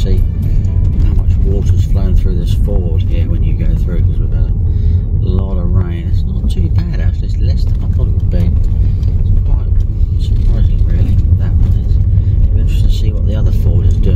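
Steady low road and engine rumble inside a moving car's cabin. Background music with a voice plays over it.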